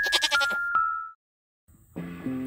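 A goat's bleat, quavering and about half a second long, over held electric-piano chime notes that die away about a second in, followed by a moment of silence.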